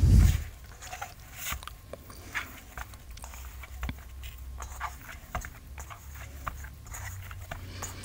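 Hands kneading a soft, freshly oiled potato-and-flour dough in a steel bowl: faint, irregular squishing and sticky clicks as the dough is pressed and folded, with a dull thump at the very start.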